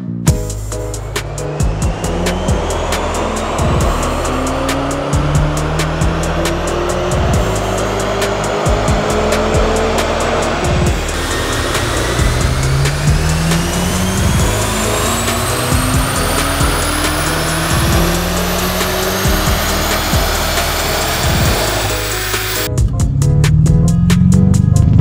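The BMW G90 M5's twin-turbo V8 hybrid drivetrain running at full throttle on a chassis dyno, its engine note climbing in pitch again and again. It stops about a second before the end.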